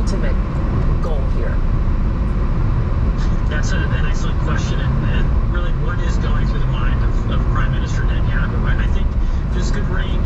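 Road noise inside a car at freeway speed on wet pavement: a steady low rumble of tyres and engine, with indistinct talk over it.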